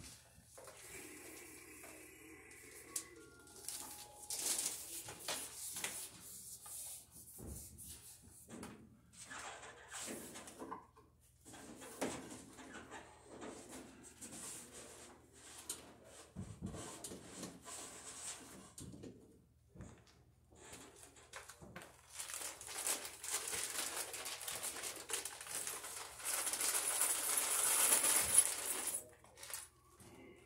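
Electrical cable being handled and pulled overhead among the ceiling joists: scattered clicks, knocks and rustles, with a louder stretch of continuous rustling and scraping near the end.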